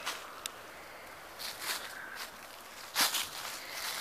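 Footsteps on grass strewn with dry fallen leaves: a few scuffing, rustling steps, the loudest about three seconds in.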